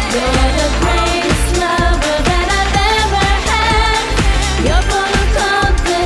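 Japanese pop song with female singing over a steady drum beat and bass.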